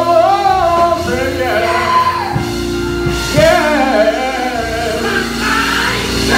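A man singing a gospel song into a microphone, his voice sliding and wavering in pitch, over held instrumental chords and low bass.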